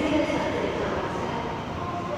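MTR M-Train electric multiple unit running in an underground station behind the platform screen doors, a steady rumbling noise, with people's voices over it.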